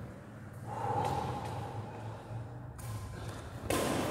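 Indoor badminton doubles play over a steady low hall hum: a short held squeak about a second in, then a sharp racket hit on the shuttlecock near the end.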